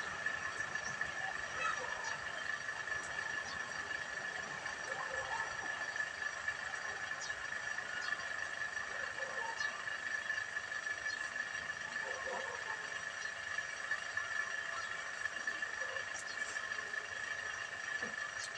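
A steady high-pitched whine runs throughout, with faint, distant voices now and then.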